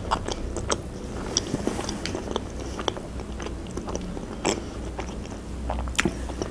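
Close-miked chewing of a mouthful of sausage, with many short wet mouth clicks and smacks throughout.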